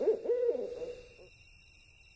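An owl hooting: a quick run of hoots in the first second or so, then fading away, with a faint steady high tone behind it.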